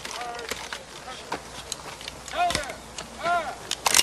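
Film soundtrack of a rifle drill: a man's short shouted words, with scattered clicks and knocks as a soldier hurries to reload his muzzle-loading rifle.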